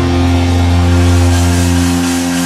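Progressive metal band playing live, holding a loud sustained chord over a deep steady bass note.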